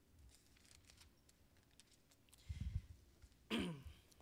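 Faint rustle of thin Bible pages being turned close to a handheld microphone, then low muffled bumps of the microphone being handled about two and a half seconds in. Near the end, a short throat clearing, falling in pitch, is the loudest sound.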